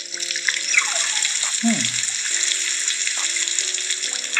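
Anki Vector robot's small speaker playing its weather animation: a steady rain-like hiss with falling electronic chirps, the second one sliding down low about a second and a half in, over steady low tones.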